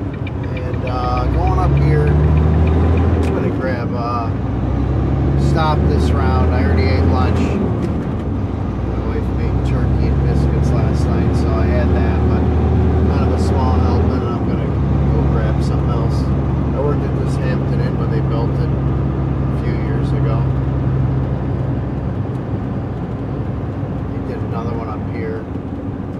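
Truck's diesel engine running under way, heard from inside the cab, its note stepping in pitch a few times. A voice is heard at times over it.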